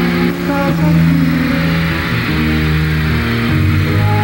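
Live band playing an instrumental passage with no singing: sustained chords over a bass line that shifts to new notes a few times.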